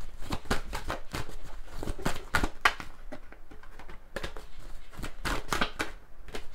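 A deck of Grand Jeu Lenormand cards being shuffled by hand: a rapid run of clicks and flicks as the cards slide over one another, coming in bursts with a lull around three to four seconds in.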